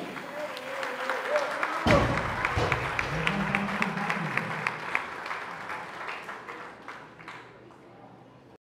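A loaded barbell with bumper plates dropped onto the lifting platform about two seconds in, a heavy thud. Onlookers shout and clap around it, the applause fading toward the end.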